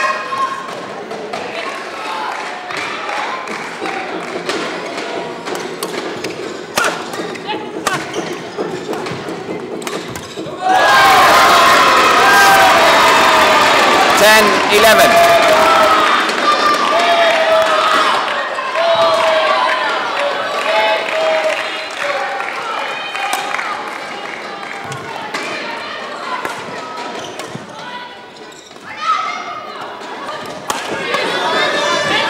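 A badminton rally, with sharp racket strikes on the shuttlecock and thuds on the court. About eleven seconds in, a sudden burst of crowd shouting and cheering greets the end of the point and dies away over several seconds.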